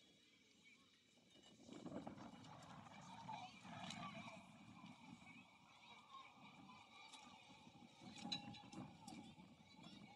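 Very faint distant voices over quiet outdoor ambience, with a few soft clicks.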